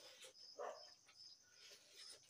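Near silence with faint cricket chirping, a high thin trill coming in regular pulses, and two or three brief soft sounds about half a second and a second and a half in.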